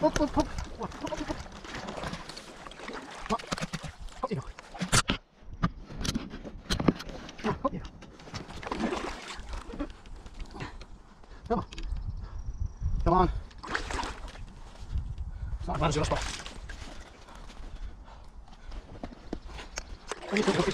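Water sloshing around a kayak paddle in shallow river water, with several sharp knocks about five to seven seconds in and short bits of a man's voice.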